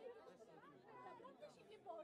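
Near silence, with faint voices of a crowd of children and adults chattering.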